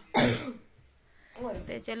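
A person coughs once, a short loud harsh burst right at the start, followed by a man's voice speaking briefly near the end.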